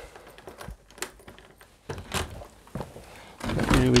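A few scattered clicks and knocks, the clearest about one and two seconds in, as the conservatory door is unlatched and opened onto the garden.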